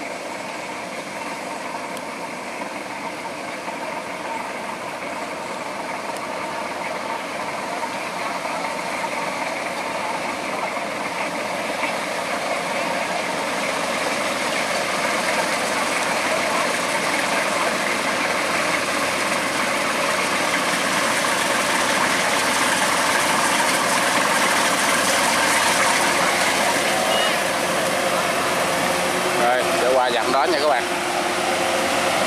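Kubota DC108X combine harvester's diesel engine and threshing machinery running steadily under load as it cuts rice, growing steadily louder as it approaches.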